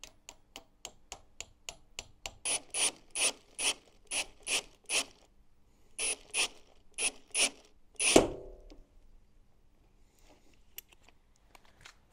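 Cordless drill driving a steel frame fixing into a door frame, giving a run of sharp ratcheting clicks about four a second that grow louder after a couple of seconds. About eight seconds in comes one loudest crack with a short ring as the fixing snaps.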